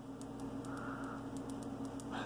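Faint scratching of a pen writing on paper, over a steady low hum.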